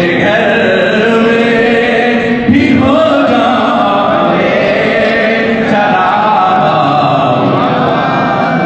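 Devotional chanting by voices, with long held notes that glide up and down in pitch.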